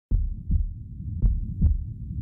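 Cinematic heartbeat sound effect: slow, deep double thuds, two lub-dub pairs about a second apart.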